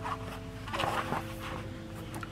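Quiet background music of soft held notes that change every half second or so, with a brief rustle about a second in.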